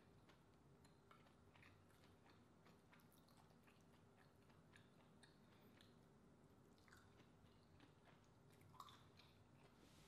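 Faint eating sounds: a metal spoon working green-lipped mussel meat out of its shell, then biting and chewing, with scattered soft mouth clicks and one slightly louder click near the end.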